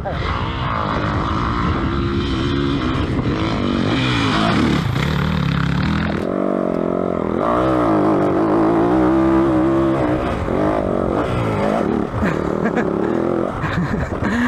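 Yamaha WR450F's single-cylinder four-stroke engine revving hard under load on a steep dirt hill climb, its pitch rising and falling with the throttle and climbing sharply about six seconds in.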